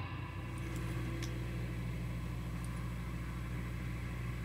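Steady low electrical hum from an electric guitar amplifier left on while the guitar is not being played, with a faint click about a second in.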